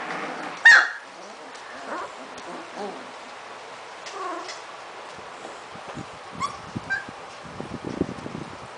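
Litter of 3½-week-old puppies playing: one sharp high yelp about a second in, then softer short squeaks and whimpers, with light clicking near the end.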